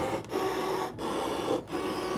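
Brother ScanNCut DX SDX125 cutting machine running, its blade carriage moving over the mat as it cuts an octagon out of cardstock. A steady whir with short breaks about every three-quarters of a second.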